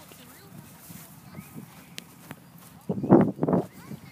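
Footsteps on grass while walking, with a short, loud burst of a person's voice about three seconds in.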